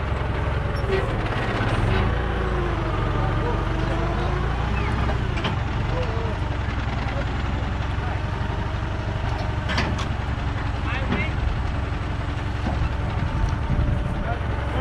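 Tractor diesel engine idling steadily, a low even rumble, with a single sharp knock about ten seconds in.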